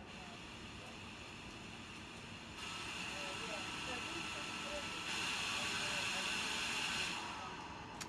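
Hamilton T1 ventilator blowing gas through its breathing circuit and flow sensor during the flow sensor calibration manoeuvre: a steady hiss that starts about two and a half seconds in, grows louder about five seconds in, and fades away near the end as the calibration finishes.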